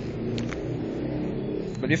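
Ozito power drill motor running with a steady whir while its keyless chuck is tightened onto a small DC motor's shaft.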